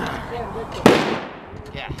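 A single gunshot from another firearm on the range: one sharp report a little under a second in, ringing away over about half a second.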